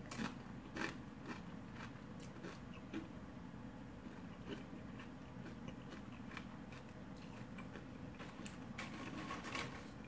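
A person chewing tortilla chips dipped in cheese dip, heard as faint, scattered crunches. The crunches come more often near the end.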